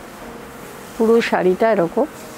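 A woman's voice: a short, loud untranscribed utterance starting about a second in, over a faint steady background hum.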